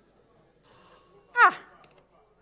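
Electronic quiz bell sounding: a ringing tone, then a short, loud tone that falls in pitch about a second and a half in.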